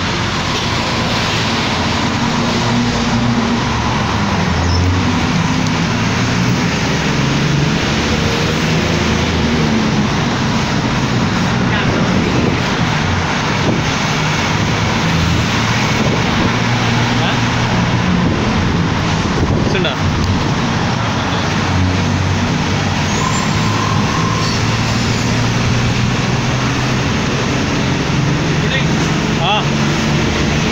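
City bus in motion heard from inside its cabin: the engine runs loud and steady, its note shifting up and down, with road and traffic noise coming in through the open windows.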